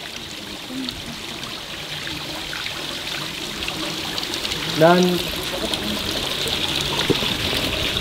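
Tap water running steadily from the faucet of an outdoor handwashing sink into its stainless steel basin.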